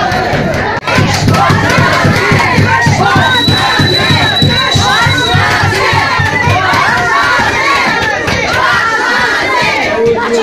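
A crowd of protesters shouting all at once, a loud, continuous mass of overlapping voices, with a brief dip just before the first second. A thin, high, steady tone sounds over the shouting for about two seconds in the middle.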